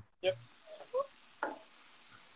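A couple of faint knocks of a wooden spoon against a cast-iron skillet as red wine is stirred round the hot pan to deglaze it.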